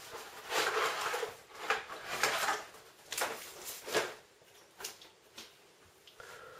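Cardboard packaging tray rustling and scraping as a motherboard is lifted out of it, followed by a few sharp knocks as the board and box are set down on a wooden desk.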